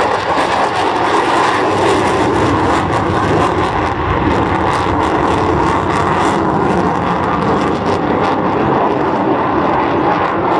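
A USAF F-35A Lightning II's Pratt & Whitney F135 afterburning turbofan in a flying display: loud, steady jet noise with a crackle running through it.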